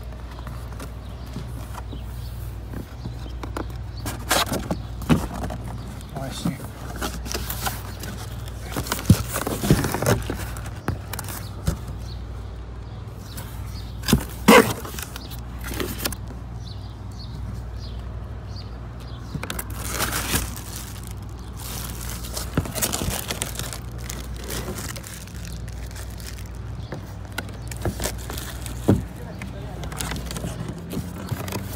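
Packaging being handled during an unboxing: a cardboard box and styrofoam packing moved about and plastic bags crinkling, with scattered scrapes and knocks over a steady low rumble. The loudest knocks come about nine and fourteen seconds in.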